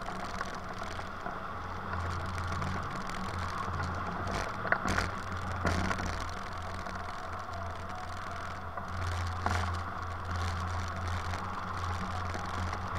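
Steady rush of air over an Icaro2000 RX2 hang glider and its keel-mounted camera in soaring flight, with a few brief clicks and rattles from the glider's frame.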